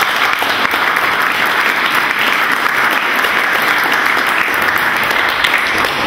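Audience applauding: steady clapping from a roomful of people.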